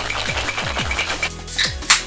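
Ice rattling fast in metal cocktail shaker tins during a quick hard shake, stopping a little over a second in. Then a can of sparkling water is cracked open with a sharp pop and fizz near the end. Background music with a thumping electronic beat runs underneath.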